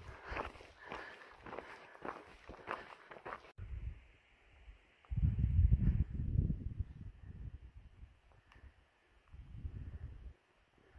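Footsteps crunching on a gravel and rock trail at a walking pace, about two steps a second. After a cut there are low rumbling gusts, loudest about halfway through.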